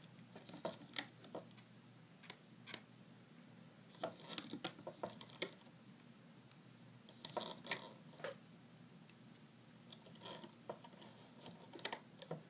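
Rubber loom bands being stretched and snapped onto the plastic pegs of a Rainbow Loom: faint scattered clicks and snaps in small clusters, with pauses between.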